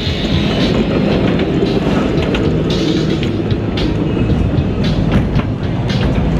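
Gerstlauer Infinity Coaster train rolling on steel track out of the station and onto the vertical lift hill, a steady rattling rumble with scattered sharp clicks.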